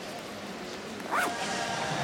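Arena background noise. About a second in, a sound rises in pitch and gives way to held notes as music starts over the loudspeakers.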